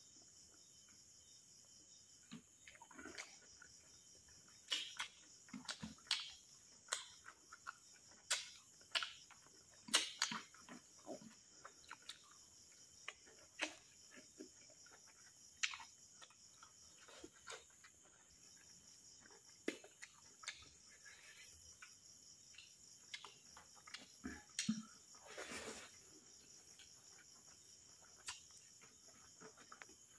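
Close-miked eating sounds: wet chewing, lip smacks and mouth clicks as rice and meat curry are eaten by hand, coming irregularly every second or so.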